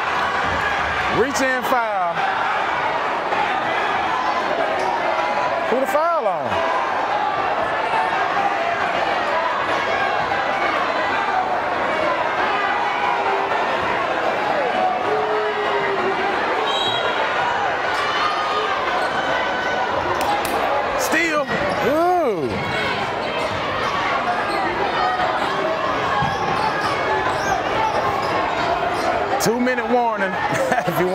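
Basketball bouncing on a hardwood gym floor under the steady chatter and calls of a gym crowd, with sneakers squeaking sharply a few times.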